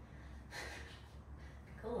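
A woman's breath during a side plank hip-raise exercise: one audible, effortful breath about half a second in, lasting around half a second.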